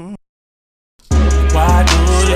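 Gospel hip hop mixtape: a held sung note cuts off just after the start, followed by under a second of silence. Then the next track's beat comes in loud, with heavy bass and sharp drum hits.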